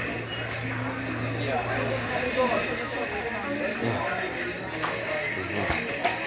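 Indistinct voices with faint music behind them, over a steady low hum that stops about two seconds in; a few sharp knocks near the end.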